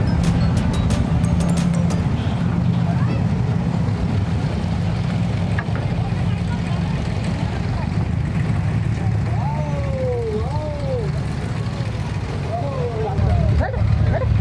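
Diesel engine of a wooden abra water taxi running steadily, with passengers' voices around it.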